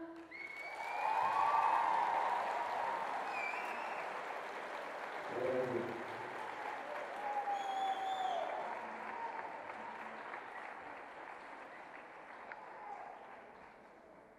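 Concert audience applauding and cheering as a song ends, with a few whistles and a shout, the applause slowly dying away.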